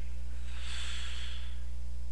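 A man's single breath into a close microphone, a soft hiss lasting about a second, over a steady low electrical hum.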